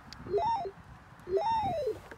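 A 3M Dynatel 7550 cable locator's audio tone in trace mode, heard as two sweeps. Each time, the tone rises in pitch to a peak and falls again, following the signal strength as the receiver passes over the traced line.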